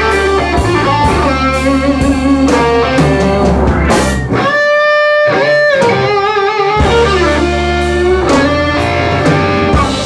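Live blues band with an electric guitar soloing over bass and drums. About four seconds in, the band drops out while the guitar holds one long note, then plays notes with wide vibrato, and the band comes back in shortly before the seven-second mark.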